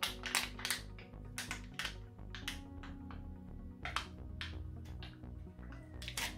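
Background music with steady low tones, under irregular sharp clicks and crackles from a plastic sauce dip pot being handled and its foil lid peeled open.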